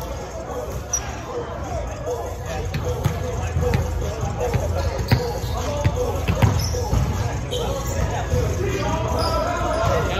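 Volleyball rally in a gym: several sharp slaps of hands on the ball, the loudest about halfway through, with short high sneaker squeaks on the hardwood court and players' voices calling out.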